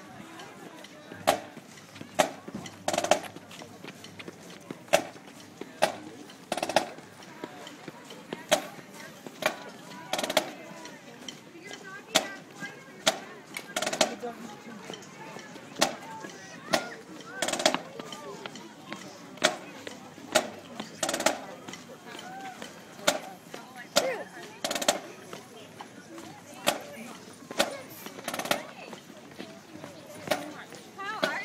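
Marching band drumline playing a slow street beat: sharp bass drum and cymbal strikes about once a second, now and then two close together.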